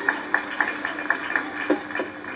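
Quiet live band backing under a pause in the talk: a keyboard holding a low steady note, with light even ticks about four times a second.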